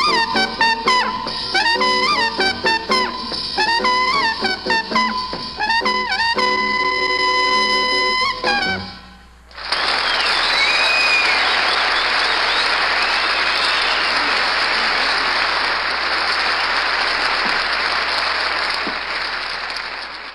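A jazz quintet (trumpet lead over piano, guitar, double bass, drums and congas) ends a blues: quick trumpet phrases, then a final held chord that breaks off about nine seconds in. After a brief gap, a studio audience applauds steadily through the rest.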